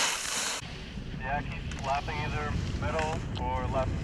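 Ski edges scraping and spraying snow as a slalom skier carves a turn close by, cut off abruptly within the first second. Then wind rumbles on the microphone and a distant voice calls out in drawn-out tones.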